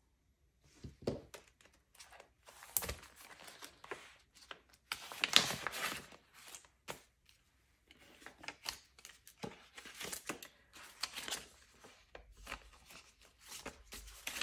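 Paper banknotes and a paper cash envelope being handled against the clear plastic pockets of a budget binder: quiet, irregular rustling and crinkling with small clicks, busiest about five seconds in.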